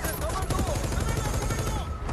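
Rapid automatic gunfire from several weapons in a film battle mix, continuing throughout. A steady high ringing tone starts near the end.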